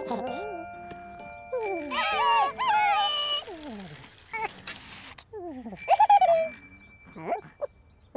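Cartoon soundtrack: light music with high, gliding wordless character voices, bell-like chimes ringing twice (about two seconds in and again about six seconds in), and a short whoosh about five seconds in.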